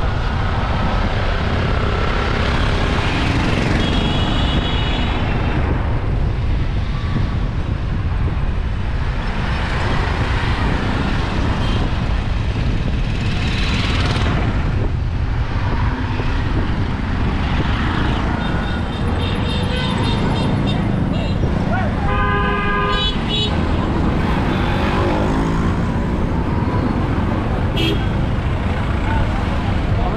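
Busy town-street traffic heard from a moving vehicle: a steady low road rumble throughout, with several vehicle horns tooting, a few high short beeps and a stronger, lower honk about three-quarters of the way through.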